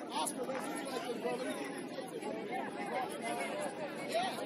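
Several people talking over one another, their voices indistinct, with no single voice standing out.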